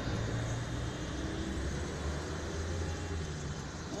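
Steady low hum of a car's engine and road noise, heard from inside the cabin.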